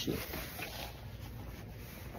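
Faint rustling and handling noise from a phone held against a puffer jacket, over a steady low room hum.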